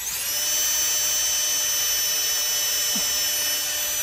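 Porter-Cable 20V cordless drill spinning a small 5/64 in. bit through a hole in a stainless steel slide ski, drilling a pilot hole into the wood behind it. The motor whine rises briefly as it spins up, then holds a steady high pitch and stops at the end.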